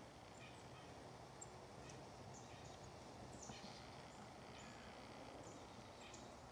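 Wild turkeys feeding, with about eight faint, short high calls scattered across a few seconds.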